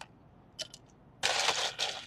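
Ice cubes handled with metal tongs: a few light clinks, then about a second in a short burst of ice rattling and scraping against a stainless steel tray.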